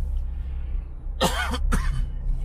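A person coughing twice in quick succession inside a moving car, over the steady low rumble of road noise in the cabin.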